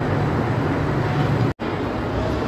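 Roller coaster train moving through its loading station: a steady mechanical noise with a low hum underneath. It drops out suddenly for a moment about one and a half seconds in, then a similar steady noise resumes.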